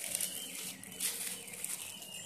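Clear plastic packaging rustling and crinkling as it is handled, with a louder rustle about a second in.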